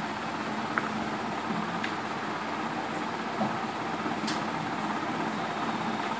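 Steady background noise, like a running fan, with a few faint ticks.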